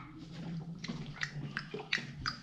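A young child drinking water from a plastic cup: faint gulps and small mouth clicks.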